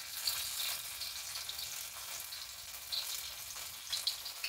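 Chopped garlic sizzling and crackling in hot desi ghee in a kadhai: the tempering (tadka) for a dal, with a steady hiss and a few small pops.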